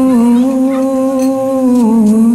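A woman's voice holding one long sung note into the microphone, stepping slightly down in pitch near the end.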